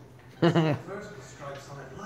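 Speech only: a short, loud vocal utterance about half a second in, followed by fainter talk.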